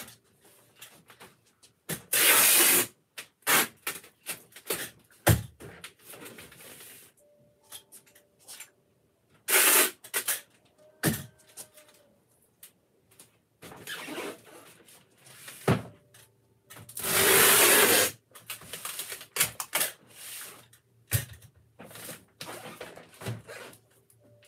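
Hand work at a packing bench: a run of short rasping noise bursts, the loudest three lasting about a second each, among scattered clicks and knocks.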